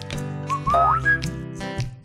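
Background music with a short whistle over it: a few whistled notes rising in pitch, about half a second to a second in.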